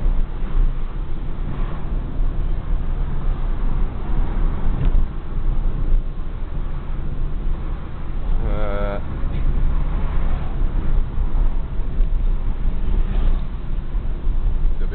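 Inside a small car on the move: a steady low rumble of engine and tyre noise. A short wavering vocal sound cuts in a little past the middle.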